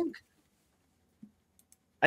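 A man's word trailing off, then near silence in a pause of a voice call, broken by a faint short sound about a second in and a few faint clicks near the end.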